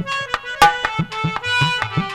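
Live Indian folk accompaniment: tabla playing a quick, steady beat, its bass strokes sliding in pitch, under a sustained reed-keyboard melody such as a harmonium.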